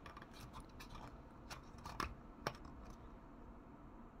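Faint handling noise of hard plastic: fingers pressing and rubbing on a stiff, clipped-in seating piece of a 1:18 scale toy trailer, with a few light clicks around the middle.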